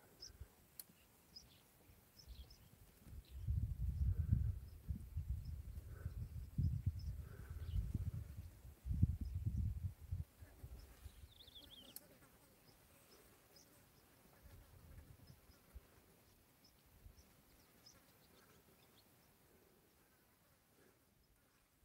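Outdoor ambience in open grassland: irregular low rumbling gusts, wind buffeting the microphone, for several seconds in the first half, with faint scattered bird chirps and one short falling call near the middle, then quiet.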